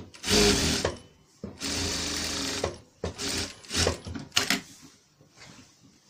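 Industrial sewing machine stitching through fabric: a short run, a steadier run of about a second, then three brief bursts, stopping about four and a half seconds in.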